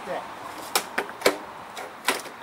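Three sharp clicks in quick succession, a quarter second apart, starting about three-quarters of a second in, from hands working the controls at the mower's handle; a fainter click follows near the end.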